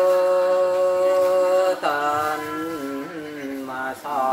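A single voice singing a traditional Mường folk song unaccompanied. It holds one long, steady note, then a little under two seconds in breaks into a new phrase that slides up and down in pitch.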